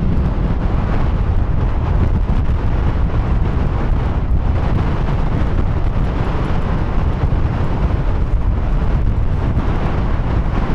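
Strong wind, sustained at about 40 mph, buffeting the microphone in a ground blizzard: loud, continuous rumbling wind noise.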